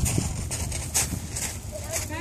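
A toddler's footsteps on a steel-grate playground bridge, a series of light metallic steps, about two or three a second.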